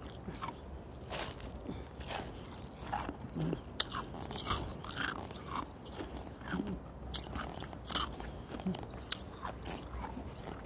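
A person chewing and crunching nugget ice ("hospital ice") right at the microphone: irregular sharp crunches, about one or two a second, over a steady low rumble.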